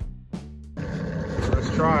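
Guitar music with strummed chords, then suddenly a small two-stroke Evinrude 9.9 outboard motor running steadily on test after its water pump impeller was replaced.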